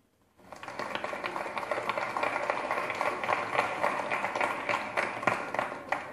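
Audience applauding, starting suddenly about half a second in and thinning slightly near the end.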